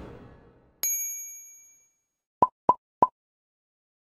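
Logo-animation sound effects: a bright bell-like ding that rings out for about a second, then three short quick pops about two and a half seconds in.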